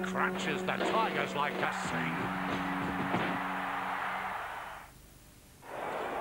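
Music with long held low notes that shift pitch about two seconds in, and a voice heard briefly near the start. It fades out about four and a half seconds in and drops to a short near silence before sound returns.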